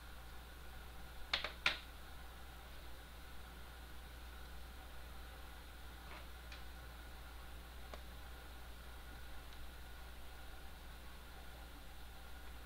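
Small metal screws and a screwdriver clicking against a plastic case as screws are driven in. There are two sharp clicks about a second and a half in and a few faint ticks later, over a low steady hum.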